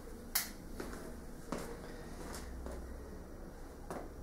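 Faint steady hiss and low hum with a few scattered sharp clicks, the loudest about a third of a second in: background noise of a Super 8 home-movie soundtrack over blank leader frames.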